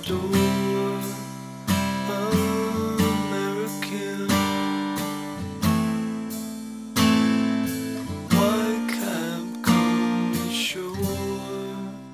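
Acoustic guitar strumming chords with no singing, about ten strums spaced roughly a second apart, each chord ringing and fading before the next.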